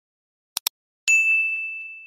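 A quick pair of click sound effects, then a single notification-bell ding that rings on and fades away over about a second.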